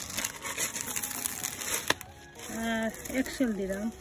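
Clear plastic bag of crushed eggshells crinkling as it is handled and tipped over a plastic bucket of potting soil, with one sharp click about two seconds in. A woman's voice follows.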